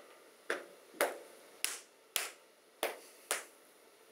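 A man slapping his own arms with his hands, the way a wrestler slaps his muscles before a fight: six sharp slaps, about two a second.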